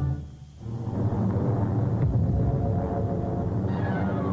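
Low, steady droning hum of approaching warplanes blended with ominous music. It swells in about a second in, after a brief dip.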